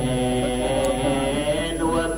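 A man chanting a mournful lament in Arabic, drawing out long held notes through a microphone.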